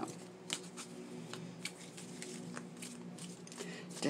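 A deck of round tarot cards being shuffled by hand: a quick, irregular run of light card clicks and rustles.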